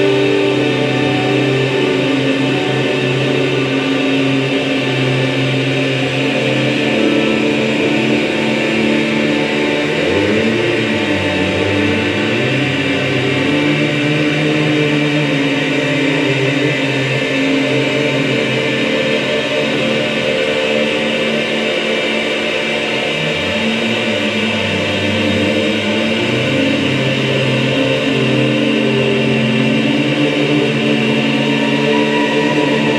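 Live drone music from voice and electronics: dense layers of sustained tones hold steady without a beat, with slow pitch glides in the low register about ten seconds in and again a little past twenty.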